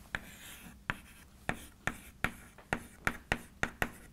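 Chalk writing on a blackboard: a series of about ten sharp, irregular taps and short strokes of the chalk against the board.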